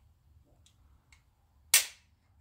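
A Glock 19 dry-fired with a trigger pull gauge: after a couple of faint ticks, the trigger breaks about three-quarters of the way through with one sharp metallic click as the striker snaps forward, at about five and a half pounds of pull.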